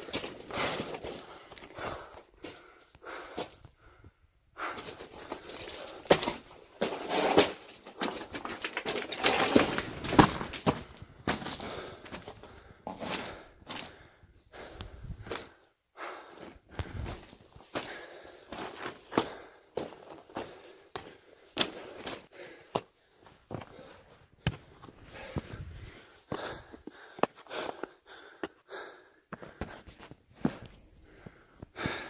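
A person breathing heavily, winded from climbing over rocks, with footsteps scraping and crunching on rock and snow throughout.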